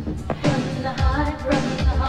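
Dance-pop song performed live: a woman singing lead over a heavy bass-and-drum backing, her voice entering about half a second in with a wavering, held melody.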